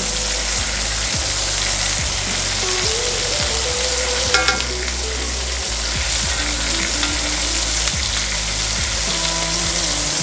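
Seasoned New York strip steaks searing in hot fat in a cast iron skillet, just turned onto their second side, with a steady sizzle. A brief metal clink sounds about four seconds in as the steel tongs touch the pan.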